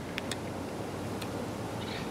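A few faint, sharp clicks as a Kershaw pocket knife trims the tag end of a fishing line, over steady low background noise.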